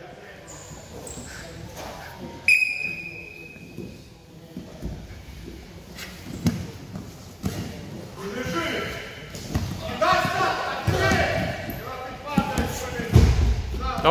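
Wrestlers grappling on a padded wrestling mat: irregular dull thuds of bodies and knees hitting the mat, in a large echoing hall. About two and a half seconds in there is one sharp knock with a brief ringing tone.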